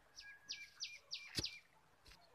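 A bird calling outdoors: a quick series of four or five falling whistled notes, faint. A single sharp knock comes about one and a half seconds in.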